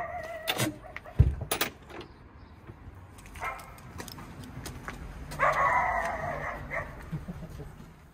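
A dog barking, once about three seconds in and then in a longer run of barks about five seconds in. About a second in there is a single heavy thump, the camper's front storage lid being shut.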